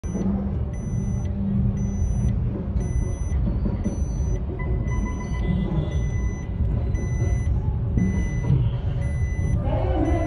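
An electronic beeper sounds steadily, about one short beep a second, over a loud, dense low rumble.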